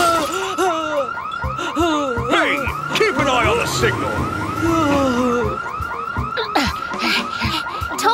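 A rapid warbling siren-like alarm, a high chirp rising and falling about five times a second without a break, with a voice over it at times.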